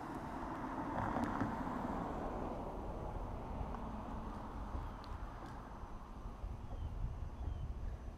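Robotic lawn mower driving and turning on grass, a faint whir from its drive motors and wheels that swells about a second in and eases off later, with wind on the microphone.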